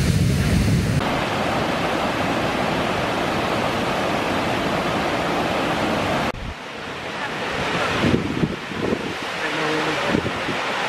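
Steady rush of falling water from a waterfall and river rapids, with wind on the microphone. It changes suddenly about a second in, and again about six seconds in, where it drops quieter.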